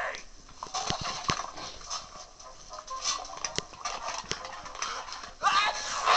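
A series of irregular sharp knocks and clicks, with a voice heard briefly near the end.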